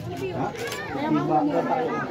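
Spectators' voices: several people chatting over one another close by.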